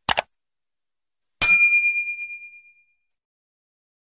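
Subscribe-button animation sound effects: two quick clicks, then a single bright bell ding that rings out and fades over about a second.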